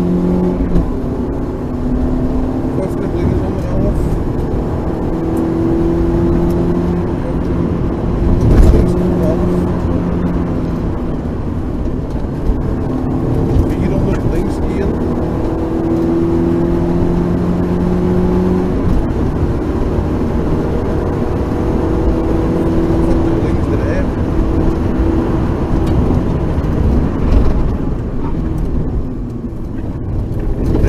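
Rally car engine heard from inside the cabin at full pace, its pitch climbing and dropping as it shifts up through the gears, over steady tyre and road noise. A single loud knock about nine seconds in, and the engine eases off near the end as the car slows.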